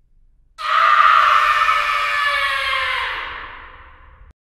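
A long horror-style scream that starts abruptly about half a second in, then slides slowly down in pitch and fades away over about three seconds.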